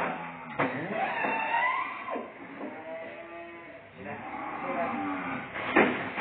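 A cow stepping up into a wheeled metal cart, with sharp knocks of hooves and cart about half a second in and again near the end.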